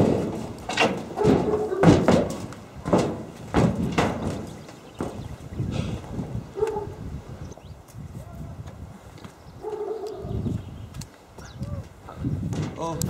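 Footsteps knocking on a sheet-metal roof: a run of loud knocks over the first four seconds or so, then fewer and fainter ones.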